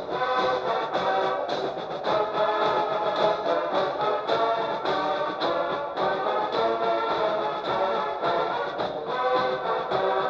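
Military marching band of brass and drums playing a march with a steady beat while marching in formation.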